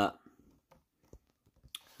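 Near silence in a small room, broken by a few faint, short clicks spread over the pause.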